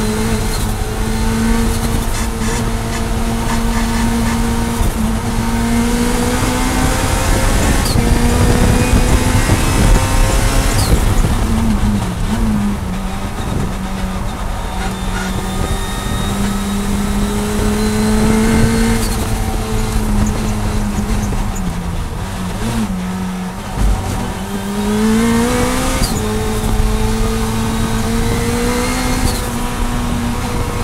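In-car sound of a turbocharged Honda K20Z1 four-cylinder race engine pulling hard at high revs, about 6,000 to 7,300 rpm. Its pitch dips twice as the car slows for corners and climbs again as it accelerates.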